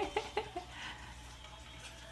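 A voice calling out in the first half-second, then quiet room tone with no distinct sound.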